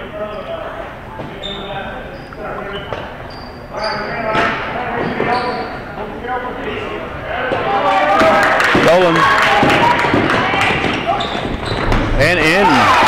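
A basketball bouncing on a hardwood gym floor during a youth game, under the echoing chatter of players and spectators in a large hall. About eight seconds in, the crowd noise swells with shouting as players drive to the basket.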